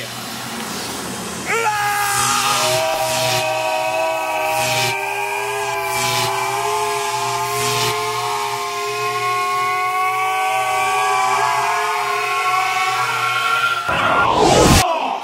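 Synthesized drone sound effect: a low hum, then about one and a half seconds in a sustained chord of several held, slightly wavering tones sets in, with brief whooshing sweeps over it, ending in a sharp downward swoosh.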